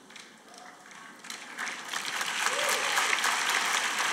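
Audience applauding: quiet at first, then clapping starts about a second in and builds to a steady applause.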